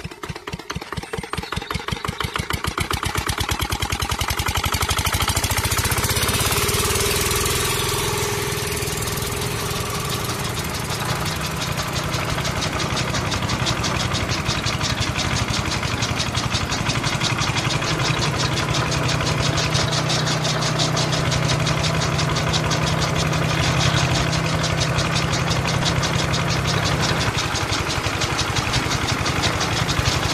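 Miniature single-cylinder model diesel engine starting up, its knocking beat quickening and growing louder over the first few seconds, then running steadily while belt-driving two model chaff cutters.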